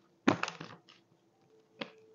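A deck of tarot cards being shuffled by hand: a quick run of card-on-card slaps and rustles about a quarter second in, then one short shuffle near the end.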